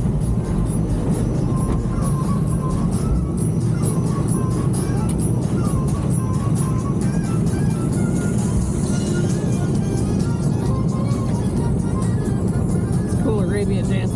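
Mack Rides water coaster boat climbing the lift: a steady low rumble with light rapid clicking, while music plays.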